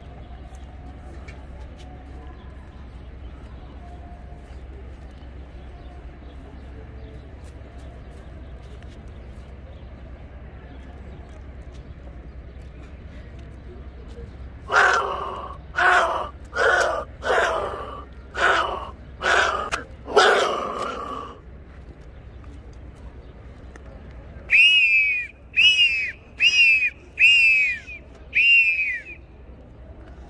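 A ceremonial whistle blown by mouth: first a run of seven harsh, rasping blasts in quick succession, then after a short pause five shorter, clear high calls that each rise and fall in pitch. Low street background underneath.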